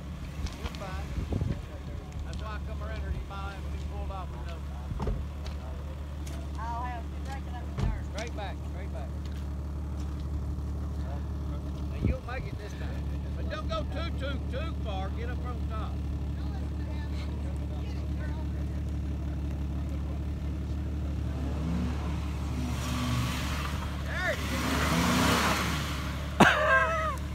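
Jeep Wrangler engine running steadily at low revs, with voices in the background. Near the end the engine works harder and there is a rising rush of noise as the Jeep climbs a steep dirt mound.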